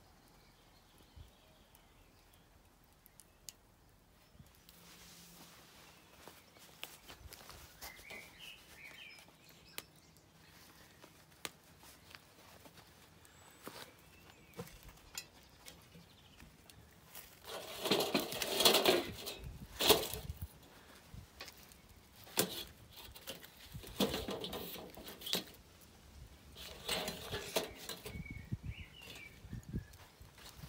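Knocking, scraping and sharp metallic clanks as a cast-iron Dutch oven is lowered onto a steel fire pit's grate and logs are shifted beside it. The noise comes in three bunches in the second half, the loudest clank among the first.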